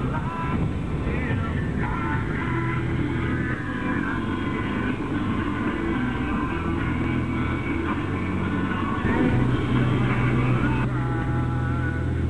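Rock-style music with singing, playing over a steady low drone of a car on the road.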